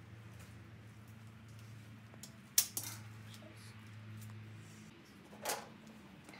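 Metal hand tools being handled: one sharp click a little before the middle, a couple of fainter clicks just after, and a short rustle near the end, over a steady low hum.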